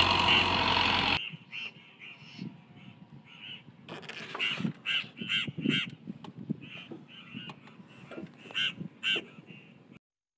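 Fiat Dabung 85 hp tractor's diesel engine running for about a second, then cut off abruptly. After that, in quiet, a bird gives a series of short calls, several in quick succession about halfway through and again near the end.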